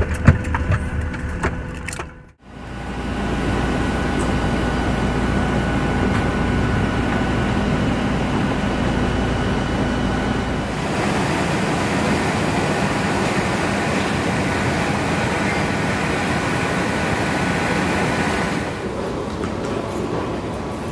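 A few clicks, one of them sharp, then after a cut a steady drone with a thin high whine from a parked Boeing 737-800 on the apron. A deep rumble under it drops away about halfway through.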